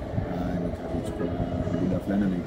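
A man talking, with a steady low rumble underneath.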